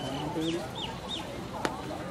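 A bird chirping: a brief high note, then three quick high chirps, each rising and falling, over a low murmur of people's voices. A single sharp click comes near the end.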